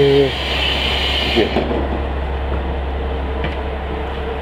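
Diesel railcar standing at the platform with its engine idling, a steady low rumble under a fan-like hum, heard as someone steps aboard. A hiss cuts off suddenly about a second and a half in, just after a light knock.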